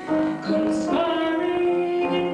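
A woman singing with musical accompaniment. About half a second in she slides up into a new note and holds it steadily.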